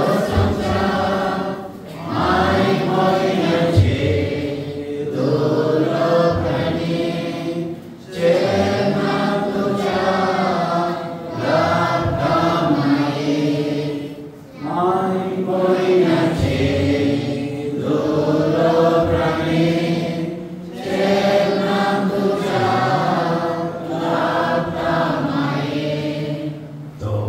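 A congregation singing a prayer hymn together in unison, in phrases of a few seconds with short pauses between them.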